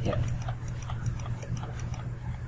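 Computer mouse scroll wheel ticking in a quick, even run of about six or seven clicks a second as it is turned to zoom, over a low steady hum.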